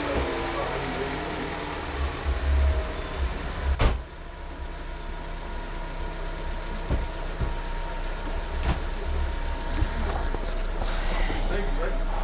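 Knocks and handling noises as things are moved about while searching a cluttered garage, with one sharp loud knock about four seconds in and a few fainter knocks later, over a steady low rumble.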